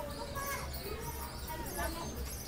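Faint, scattered chirps of caged birds over a low steady hum.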